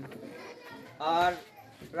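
A man speaking Bengali: a single drawn-out word about a second in, with short pauses either side, over faint background voices.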